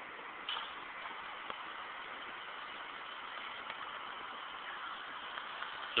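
Steady, fairly quiet outdoor background noise with no distinct event, and a faint click about half a second in.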